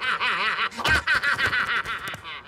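A Rabbid cartoon rabbit's voice snickering in a quick run of short, high-pitched bursts.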